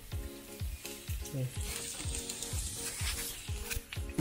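Chopped garlic sizzling in hot oil in a frying pan, the sizzle growing stronger about a second and a half in. Background music with a steady beat plays underneath.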